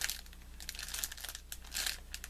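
Clear plastic wrap around a bundle of diamond-painting drill packets crinkling in irregular bursts as it is handled and turned over.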